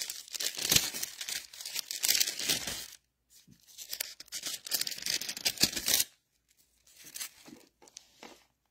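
Thin Bible pages being turned and rustling, in three bursts: a long one, a second starting about three and a half seconds in, and a short one near the end.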